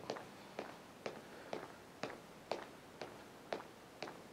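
Faint footfalls of a person marching on the spot, about two steps a second.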